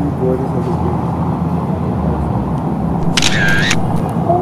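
Contax 645 medium-format film camera firing about three seconds in: a shutter click followed by a short whir of its built-in motor winder advancing the film, stopping abruptly. A steady low background rumble runs under it.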